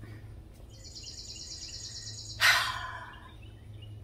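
A bird's high, fast trill for about a second and a half, then a short hissing rush of noise about two and a half seconds in that fades within a second, the loudest sound here, over a steady low hum.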